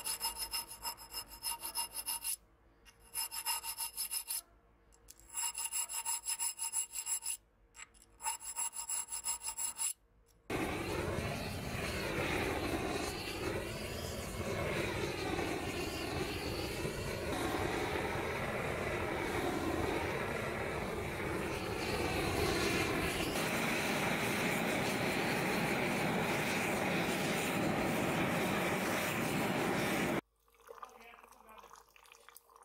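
A small round file stroking quickly back and forth in the serration notches of a stainless steel knife blade, in three or four runs with short pauses, the blade giving a steady ringing tone under the strokes. About ten seconds in, this cuts to a gas torch burning steadily, heating the blade in a forge.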